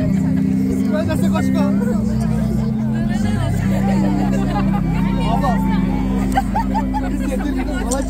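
Live rock band's amplified instruments holding low sustained chords, changing about three seconds in, where a deep bass note comes in. Loud crowd chatter and voices close to the microphone run over it.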